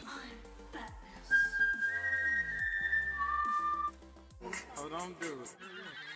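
A person whistling a few long, held notes. One high note is sustained for about two seconds, and a lower note joins it near the end before both stop together.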